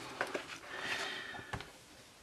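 Paper pages of a colouring book turned by hand: a soft swishing rustle that swells and fades, with a few light ticks.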